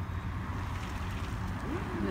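Wind rushing over a phone microphone, a steady low rumble with a hiss above it.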